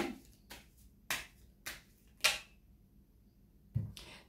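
Four sharp clicks, evenly spaced about half a second apart, in the first two and a half seconds, followed by a soft low thump near the end.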